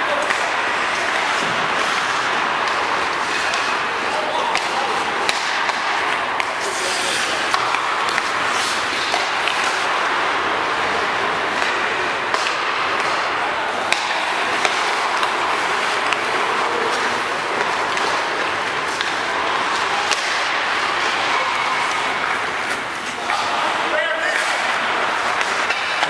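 Ice hockey practice on an indoor rink: a steady wash of skate blades on the ice and players' voices, with frequent short sharp clacks of sticks and pucks and pucks striking the boards, ringing in the large hall.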